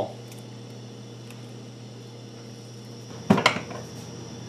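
A few faint ticks of a small kitchen knife slicing strawberries against pie dough on a counter, over a steady low room hum. A louder short knock or clatter comes about three seconds in.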